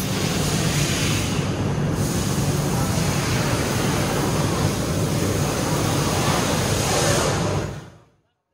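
Steady machinery noise of a wafer production line running: the baking machine and conveyors carrying wafer sheets. The noise fades out near the end.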